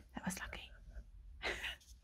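A woman's soft, whispery speech, ending in a short breathy sound near the end.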